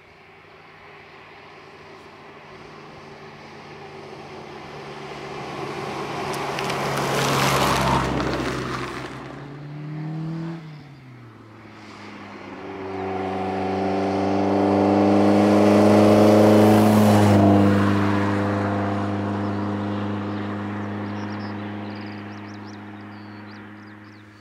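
Rally cars driving past on the road one after another. A first engine sound builds and passes about eight seconds in. A second car then accelerates past, its engine note rising to the loudest point around sixteen seconds, dropping in pitch at a gear change and fading away.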